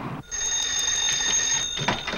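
Telephone bell ringing steadily for about a second and a half, then stopping with a short clunk as the receiver is picked up.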